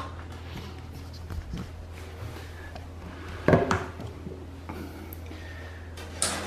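Small clicks and handling noises as 3D-printer filament and plastic feed tubing are worked into the extruder's push-fit fitting by hand, with one sharper knock about three and a half seconds in, over a steady low hum.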